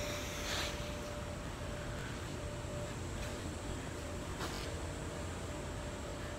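Steady indoor room noise: a low even hiss with a faint steady hum, a soft rustle about half a second in, and a faint tick later on.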